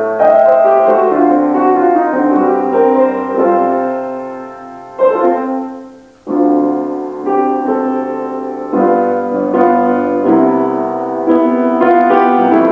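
Piano music: a slow passage of held chords and single notes, each struck and left to ring, fading out about six seconds in before a new chord begins.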